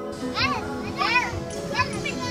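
Young children's high voices calling out at play, three rising-and-falling cries, over steady background music.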